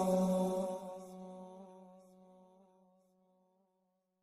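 The last held note of an unaccompanied Arabic devotional chant (nasheed), a single voice with a slight waver, fading away and gone by about two and a half seconds in.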